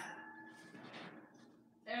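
Faint kitchen clatter from a tray of cookies being taken out of the oven: a knock at the start, then a faint ringing that dies away within about a second.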